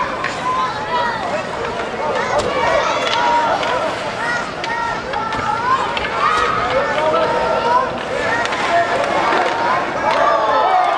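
Many voices shouting and calling out at once around an ice hockey rink during a youth game, with occasional sharp clacks of sticks and puck on the ice.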